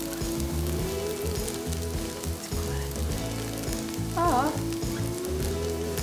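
Tofu slices sizzling as they fry in a thinly oiled pan, with a fork working among them.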